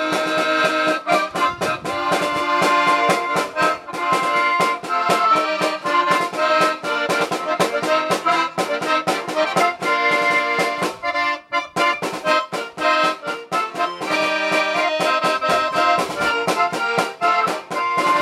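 Paolo Soprani button accordion and snare drum playing a polka, the drum marking a steady beat under the accordion's melody. The music drops out for a moment about eleven and a half seconds in, then carries on.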